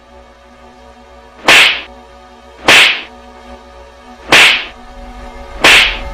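Four loud, sharp slap sound effects, each a crack with a short swishing tail, coming about a second and a half apart over steady background music.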